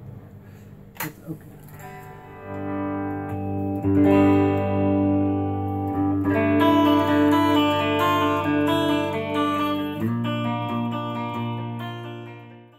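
Homemade solid-body electric guitar in a non-standard tuning, played as sustained, ringing chords that begin about two seconds in and change a few times, easing off near the end.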